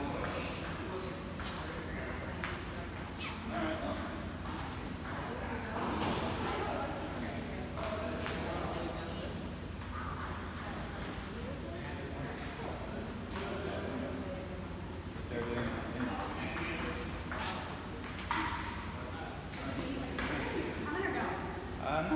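Table tennis ball clicking off paddles and the table during play, with people talking in the background.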